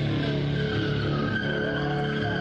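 Live rock band with heavily distorted electric guitars and bass holding sustained notes, a dense, steady wall of sound.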